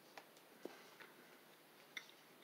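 Near silence with a few faint, soft clicks, about four in the two seconds, from a man chewing a mouthful of muffin.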